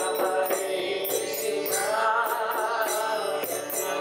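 Devotional kirtan: a man chanting a mantra melody while playing a mridanga, the two-headed Indian barrel drum, in a steady beat of about two or three strokes a second.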